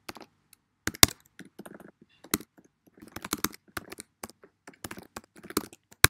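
Computer keyboard being typed on in a quick, uneven run of key clicks, ending in one sharper, louder click.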